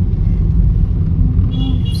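Steady low rumble of a car on the move, heard from inside the cabin.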